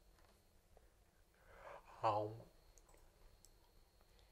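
Mostly quiet room tone with a few faint small clicks. About halfway through, a man takes a breath and makes one short voiced sound that falls in pitch, then it goes quiet again.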